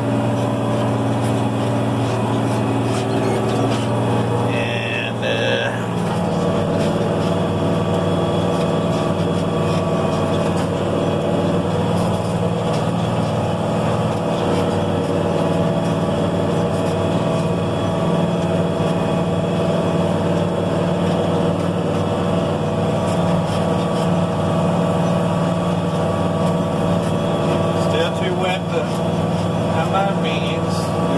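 Case 4890 tractor's diesel engine running steadily under load, pulling a disk chisel plow, heard from inside the cab. About six seconds in, its pitch steps up and then holds.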